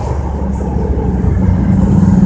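Engine and road noise from a vehicle moving through town traffic: a steady low rumble with an engine hum that grows stronger in the second half.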